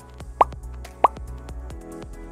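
Two short rising 'plop' pop sound effects, about two-thirds of a second apart, over quiet background music.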